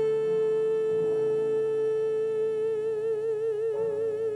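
A woman singing one long held note over soft accompaniment. The note is steady at first and breaks into vibrato about two-thirds of the way through, while the chord underneath changes about a second in and again near the end.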